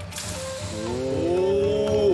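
Hot gochujang stew broth poured into a fire-heated bowl, sizzling steadily. From about a second in, several voices join in a drawn-out rising 'oh'.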